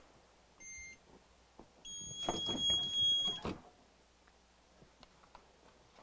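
Heat press's digital timer beeping: a short beep just under a second in, then a longer beep of about a second and a half, signalling the end of a five-second timed press. Soft handling noise sounds under the longer beep.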